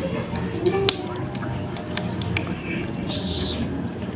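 Two kittens chewing and tearing at a whole fried fish, making a string of sharp, wet mouth clicks and smacks, the loudest about a second in.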